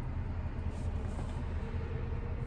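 Steady low hum inside a car's cabin during a pause in talk.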